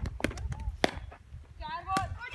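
A few sharp, separate cracks of cricket balls being struck in the practice nets, the loudest a little under a second in, over a steady low rumble, with brief voices near the end.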